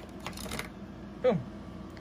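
A few light clicks and rattles of small plastic and metal parts in the first half-second or so, as a front shock is worked out of a Traxxas Revo 2.0's suspension mount by hand.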